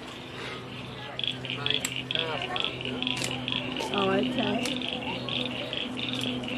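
Frogs calling in rapid, high-pitched pulsed trills, starting about a second in and continuing, over people talking in the background and a faint low steady hum.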